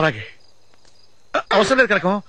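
Crickets chirring in a night ambience: a faint, steady high trill. Over it a man's voice is heard briefly at the start, and then comes back wailing about one and a half seconds in.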